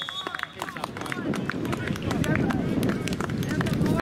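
Sideline sound of a football match: distant players' shouts and calls across the pitch, with scattered sharp clicks, over a rumbling noise on the microphone that grows from about a second and a half in.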